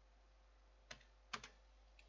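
A few faint computer keyboard keystrokes: one about a second in, then two more in quick succession.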